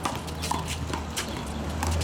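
Rubber handball being hit by hand and rebounding off the concrete wall in a rally: several sharp slaps spaced through the two seconds, over a low steady hum.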